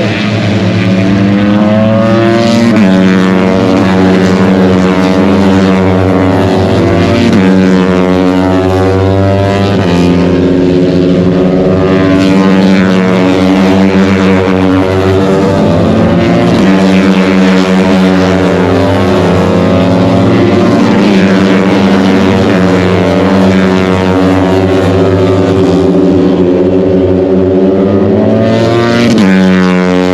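MotoGP racing motorcycles running at high revs past the trackside, a loud, continuous engine note that rises and falls in pitch every few seconds as bikes accelerate, shift gears and pass.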